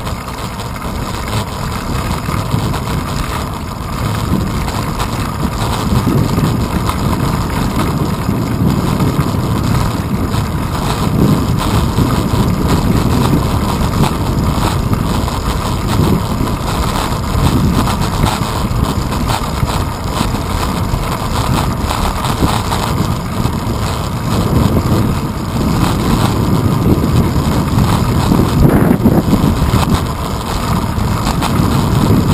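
Wind buffeting the microphone of a handlebar-mounted GoPro on a moving bicycle, with low rumble from the ride over the pavement. The sound is steady and gusty, and grows a little louder a few seconds in.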